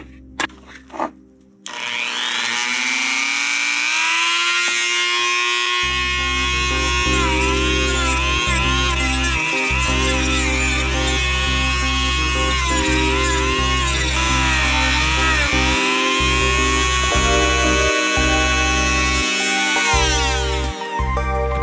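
A Dremel rotary tool with a cutoff wheel spinning up about a second and a half in, then whining at high speed, its pitch dipping repeatedly as it cuts through a plastic trim piece. Background music with a heavy bass comes in about six seconds in.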